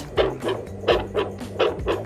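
Heartbeat played through the loudspeaker of a handheld precordial Doppler probe held to a diver's chest, a run of short pulses, over background music. The heart is being listened to for gas bubbles after a dive.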